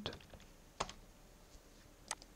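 A few faint computer keyboard keystrokes, then one sharper key click a little under a second in, as a value is typed into a software field.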